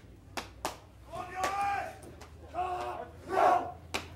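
Two sharp slaps, then three loud shouted calls from a four-man bobsled crew at the start, the last one the loudest, as the crew readies to push off.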